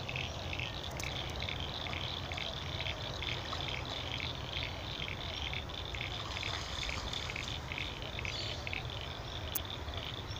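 A small animal chirping steadily in a fast, even rhythm, about three high-pitched chirps a second, over a faint low rumble.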